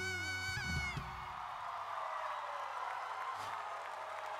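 A female singer's held high note over the song's backing, ending about a second in, followed by a live studio audience cheering and applauding.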